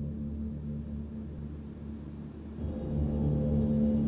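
Low, steady, gong-like soundtrack drone with a rumble beneath it. It fades a little about halfway through, then swells again with a new set of sustained tones.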